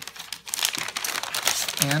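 Thin white paper bag crinkling and rustling in the hands as its sticker-sealed flap is worked open, continuous from about half a second in.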